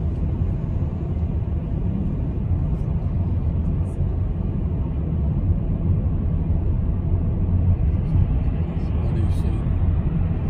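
Steady low rumble of a car driving at city speed, heard from inside the cabin: engine and tyre road noise.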